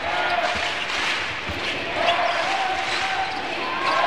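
A basketball dribbled on the hardwood court, with the steady noise of the arena crowd around it.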